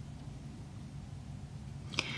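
Quiet room tone: a low steady hum with no other sound, and a faint click right at the end.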